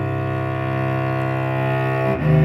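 Solo cello playing the accompaniment part of a slow study, holding one long bowed note (or double stop) steadily before moving to the next note.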